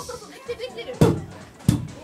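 Two sharp, low thumps through a handheld microphone, about two-thirds of a second apart, over faint voices.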